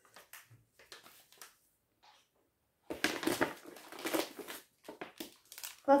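Crinkly food packaging handled in the hands: a few faint clicks first, then about three seconds of crinkling and crackling from about halfway in.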